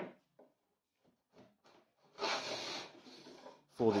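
Hand plane taking one shaving stroke along the edge grain of a hardwood (Tasmanian oak) board: a dry scraping swish lasting about a second and a half, starting about halfway through. It is a budget Ingco plane with a folded steel sole, used straight out of the box with its blade not yet sharpened. A few faint knocks come before the stroke.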